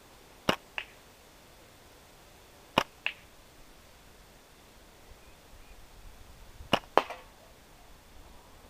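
Three slingshot shots: each a sharp snap of the rubber bands on release, followed about a quarter to a third of a second later by a click of the shot striking the target. The last strike is the loudest.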